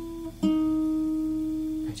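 Capoed acoustic guitar fingerpicked one note at a time: a ringing note dies away, then a new note is plucked about half a second in and rings on, slowly fading.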